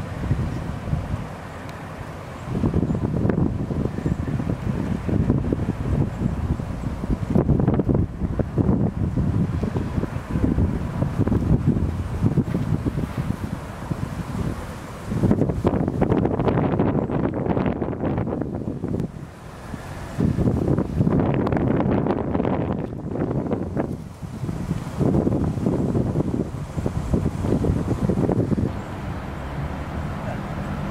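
Wind buffeting the microphone in irregular gusts, a low rumbling that rises and falls every few seconds.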